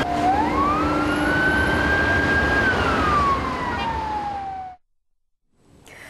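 Emergency vehicle siren wailing over city traffic noise: one slow rise in pitch, a hold, then a long fall. The sound cuts off abruptly near the end.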